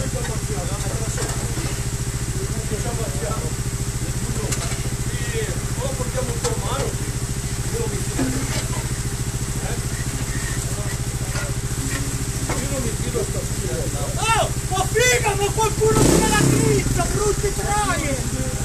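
Trial motorcycle engine idling steadily, with a brief louder rumble about sixteen seconds in. Voices shout in the distance, mostly near the end.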